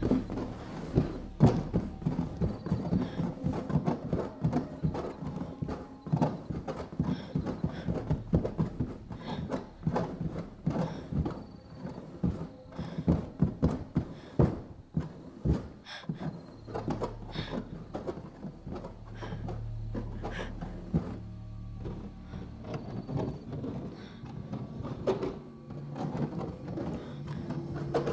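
Film soundtrack: a low drone under dense, irregular clicking and knocking that runs throughout.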